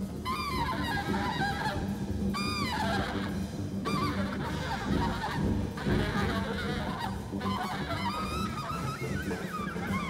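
Live free-jazz big-band improvisation: a shrill, squealing lead line that bends and swoops up and down in short arcs, over a low sustained drone.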